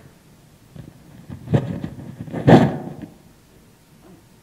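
Clip-on lapel microphone rubbing and rustling against a shirt as it is handled and adjusted, in two scrapes, the second louder.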